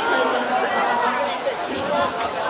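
Overlapping voices of many people talking at once: crowd chatter.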